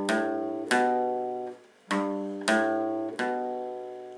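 Acoustic guitar picking single bass notes on the low strings, each left to ring and fade: one note, a brief break, then three more in quick succession. It is the intro bass run of the third fret of the low E, the open A and the second fret of the A string (G, A, B).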